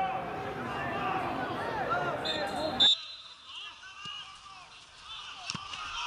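Indistinct voices and shouts of spectators at a football ground. About two and a half seconds in comes a short, shrill whistle blast, the loudest moment. Then the sound cuts abruptly to a quieter stretch of faint voices with a single click near the end.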